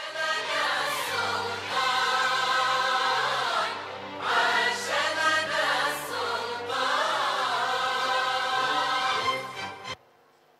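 Background music: a song sung by a group of voices over instrumental backing with steady low bass notes, cutting off suddenly near the end.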